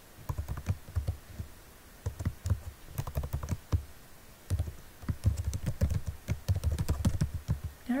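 Typing on a computer keyboard: irregular runs of key clicks with short pauses, busier in the second half.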